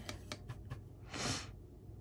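A few faint clicks of a watercolor brush working paint in a palette pan, then a short breath about a second in.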